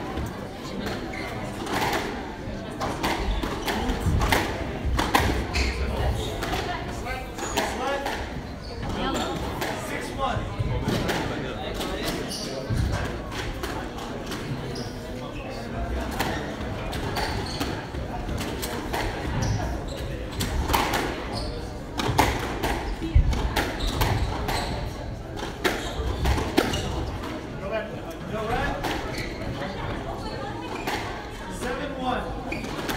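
Squash rally: repeated sharp knocks of the ball coming off the rackets and the court walls, at irregular intervals, over people talking.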